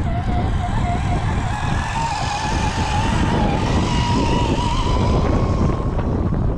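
Whine of a 1:10 scale RC crawler's electric motor and gears as it climbs a slope under load, its pitch wavering and rising a little about two seconds in. Wind buffets the microphone throughout.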